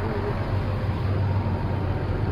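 Bus diesel engine running steadily at low revs while the bus is driven, heard from inside the cabin as a constant low hum with road and cabin noise.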